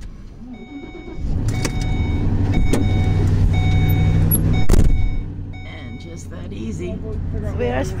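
A van's engine is jump-started from a pickup about a second in, catching on a flat battery and settling into a steady run. A short beep repeats over it and there is a single knock, after which the engine runs more quietly.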